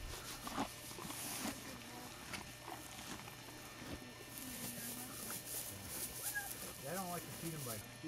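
Quiet crunching and rustling of a horse eating hay close by, with faint voices in the background near the end.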